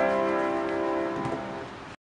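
Upright piano's last chord ringing on and slowly dying away as the piece ends, with a faint knock a little past a second in.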